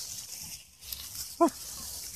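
A puppy gives one short, sharp yip about one and a half seconds in, over the steady rustle of dry fallen leaves as the puppies scamper through them.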